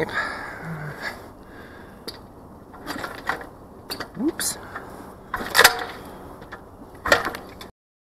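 Kawasaki KDX220R two-stroke dirt bike being kick-started: a few mechanical clunks of the kickstarter going through its stroke, the two loudest near the end, with no engine firing.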